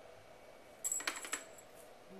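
A glass mixing bowl clinking and tapping against the rim of a plastic food processor work bowl as flour is tipped out of it: a quick run of light clinks about a second in, and one more near the end.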